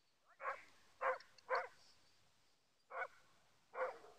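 A dog barking five short barks: three quick ones about half a second apart, a pause, then two more.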